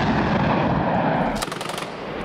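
Combat sounds: a loud, noisy rumble of blast and gunfire that eases off, then a quick burst of automatic gunfire about a second and a half in.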